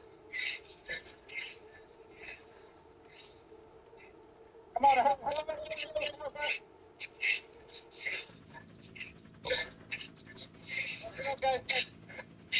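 Cyclists' hard, rapid breathing picked up by headset microphones during an all-out effort on indoor trainers, about two breaths a second. A loud strained groan comes about five seconds in, and another near the end.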